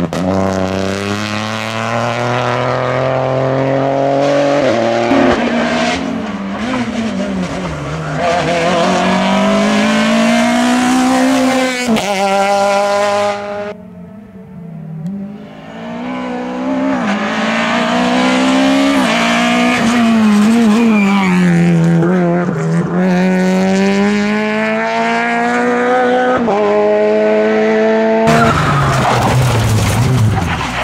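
Rally cars driven hard past the roadside one after another, engines revving high and dropping through gear changes and braking. There is a short quieter gap about halfway through.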